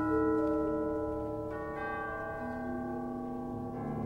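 Symphony orchestra playing a quiet, slow passage of contemporary classical music: soft, sustained ringing chords, with new notes entering at the start and again about a second and a half in.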